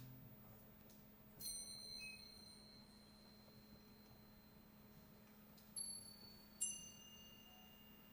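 Soft high metal chime tones struck one at a time, four strokes in all, each ringing on for several seconds.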